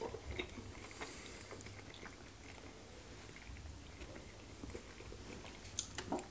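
Close-miked eating sounds: chewing, with soft wet smacks and small clicks of mouths and fingers working fufu and meat, and one sharper click near the end.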